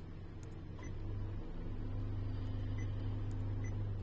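Steady low hum inside a car cabin, getting louder about a second in, with a few faint ticks.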